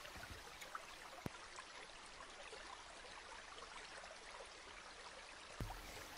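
Faint, steady trickling water like a small stream, with a faint click about a second in.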